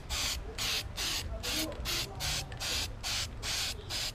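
Aerosol can of Plasti Dip rubber coating spraying in short, evenly spaced bursts, about two a second.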